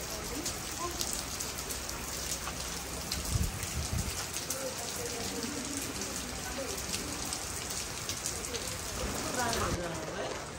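Steady rain pattering, many small drops ticking, with faint voices in the background.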